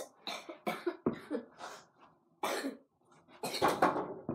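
A boy who is sick coughing repeatedly, about seven short coughs with brief gaps, the last few bunched together near the end.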